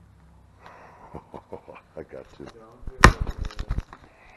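Footsteps and shuffling through debris of old boards and litter: a quick run of knocks and crunches, building to a loud cluster of cracking wooden clatters about three seconds in.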